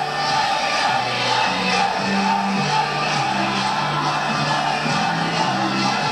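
Music with a bass line that steps between low notes, over the steady noise of a large rally crowd. It is old video footage heard played back in a room.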